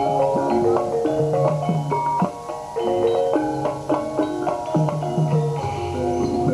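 Javanese gamelan accompaniment for a jaran kepang horse dance: a dense, fast stream of struck, ringing metallophone notes over a lower repeating note.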